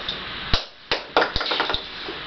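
A quick series of sharp clicks or taps, about six in a second and a half, the earlier ones loudest.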